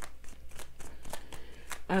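A tarot deck being shuffled by hand: a quick, uneven run of soft card clicks.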